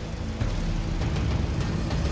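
Car engine running with a steady low rumble, under a soft background music score.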